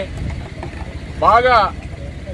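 A man speaking loudly outdoors: a short pause, then one drawn-out word about halfway through, over a steady low background rumble.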